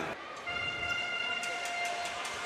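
A fan's air horn blown in the crowd: one steady, high horn note held for about a second and a half.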